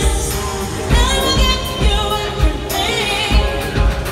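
Live pop song over an arena PA: a female lead vocal sung over an electronic backing with a steady kick-drum beat, heard from within the crowd.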